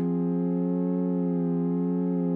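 A sustained chord from the Xfer Serum software synthesizer on its plain sawtooth-wave initial patch through a low-pass filter, held at a steady level and pitch.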